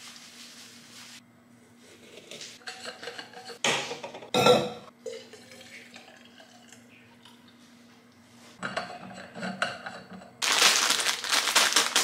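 Hands preparing mate. Dry yerba pours from its bag into a metal-rimmed gourd, then a few sharp knocks and clinks of kitchenware come about four seconds in. A quieter stretch follows as hot water is poured from an electric kettle into a thermos, and near the end a plastic biscuit packet crinkles loudly.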